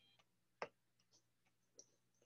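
Faint clicks of a stylus tapping on a tablet screen: one sharp click about half a second in, then several lighter taps.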